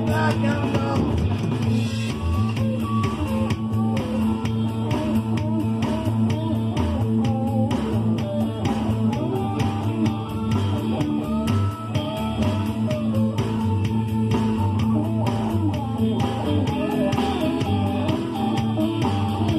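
Small band playing live rock music without singing: a guitar plays melodic lead lines over bass guitar and a steady beat.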